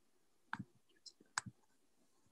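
Faint clicking at a computer: two sharp clicks about a second apart, each with a short low knock, and a weaker tick between them.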